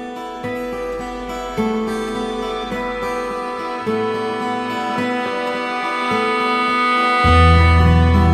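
Background music that grows steadily louder, with a deep bass coming in about seven seconds in.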